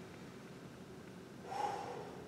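A man taking one audible deep breath through the nose about one and a half seconds in, over faint room tone.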